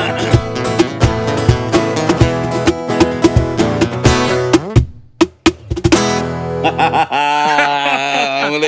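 Acoustic guitars strumming with cajón percussion, closing a song: about five seconds in the strumming breaks into a few sharp stopped chord hits, then a final chord rings out. A man's voice starts near the end.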